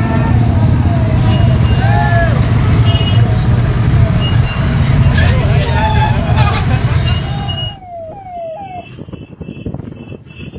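Many motorcycles running together in a rally, with people shouting and horns beeping over the engines. About eight seconds in, the sound cuts to a quieter stretch where a repeating, rising siren-like horn sounds.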